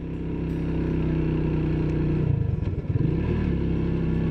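Cafe racer motorcycle's engine running steadily under way, its note dipping and wavering briefly about halfway through before settling back to a steady pitch.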